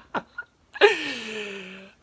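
A young man laughing: a few short breathy bursts, then, about a second in, one long breathy cry that falls in pitch.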